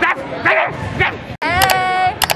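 Teenage girls' high-pitched squeals and excited voices close to the microphone, a few short bursts, then a sudden break and a long high squeal.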